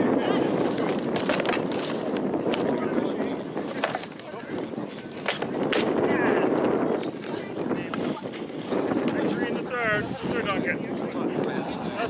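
Sword blows in armoured combat: several sharp knocks, mostly in the first half, as rattan swords strike shields and armour, over a steady rushing background. Voices are heard near the end as the round is stopped.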